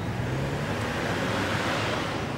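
Road traffic: the rushing noise of a car, swelling to a peak about a second and a half in and then easing off.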